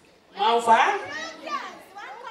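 A woman's high-pitched voice speaking through a handheld microphone, beginning a moment in. The words are not caught.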